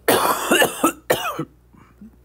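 A person coughing: a loud, short coughing fit in two bursts over about a second and a half.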